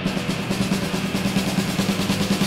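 Metal band recording: the drums come in with a rapid snare roll of fast, even strikes over a held low guitar note.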